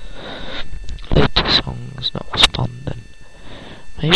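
A person's voice talking in short phrases with brief pauses between them.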